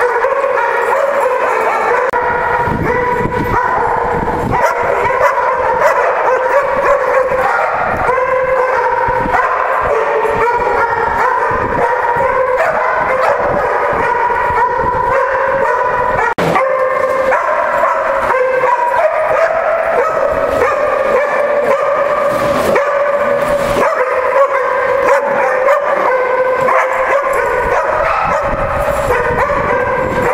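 A pack of dogs barking and yipping over one another in a continuous din, with no pauses, and a sharp click about halfway through.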